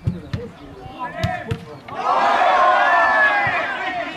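A few sharp thuds of a football being kicked in the first second and a half, then several people shouting at once for about two seconds, the loudest part.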